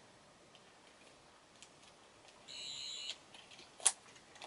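Faint room hiss, then a short high-pitched electronic beep lasting just over half a second about two and a half seconds in, and a single sharp click near the end, from a small handheld object being fiddled with.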